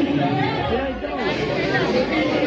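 Several women talking over one another in lively group chatter.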